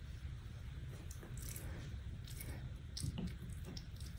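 Quiet room tone with a low steady hum, broken by a few faint, short clicks.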